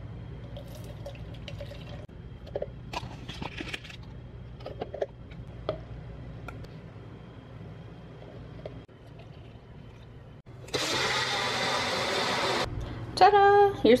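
Faint clinks and handling noises as milk and powder go into a personal blender cup. Near the end a personal blender runs loudly for about two seconds, blending a protein shake.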